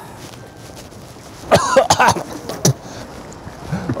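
A man coughing in a short fit: a cluster of coughs about a second and a half in, another shortly after, and one more near the end. It is a smoker's cough from COPD.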